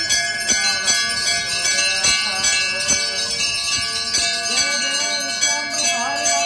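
Temple bells ringing continuously during an aarti, a dense metallic ring renewed by rapid repeated strikes.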